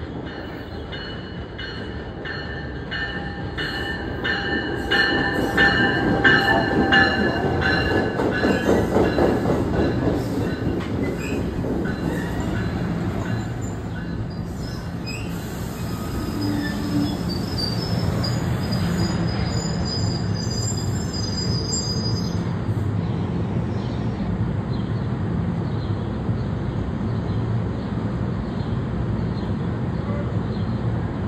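NJ Transit MultiLevel commuter train pulling into the station: its wheels click rhythmically over the rail joints, loudest as the cars pass about a third of the way in. High-pitched squeals follow as it slows, then a steady low rumble as the train stands at the platform.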